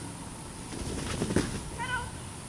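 A short, high-pitched, wavering whine near the end, typical of an excited dog whining, over a faint low rustle.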